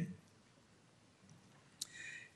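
A man's voice trailing off at the start, then near silence with one short click near the end.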